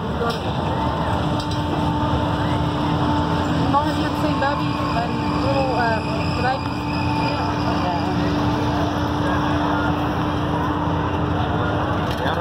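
Fairground ride machinery running: a steady low rumble with a humming tone over it, and people talking in the background.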